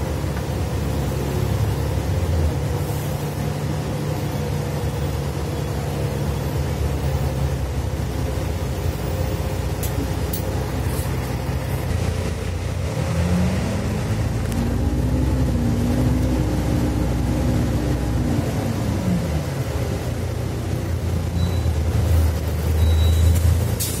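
Bus diesel engine running, heard from inside the passenger area near the exit door. About halfway through, its pitch rises as it pulls the bus along and then falls away again over several seconds.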